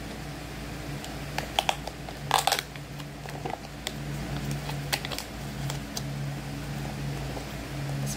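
Handling of a clear plastic snack container as its paper seal label is peeled off the lid: a few scattered sharp clicks and a short crackling rustle about two and a half seconds in, over a steady low hum.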